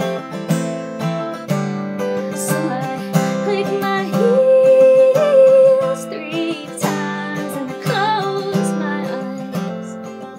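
A woman singing while strumming an acoustic guitar fitted with a capo. She holds one long note from about four seconds in, then carries on singing over the chords.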